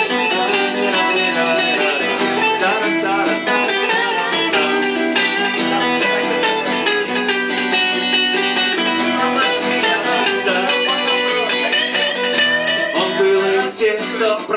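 Instrumental guitar passage: a strummed acoustic guitar with a second guitar playing a melodic lead line over it, played live without singing.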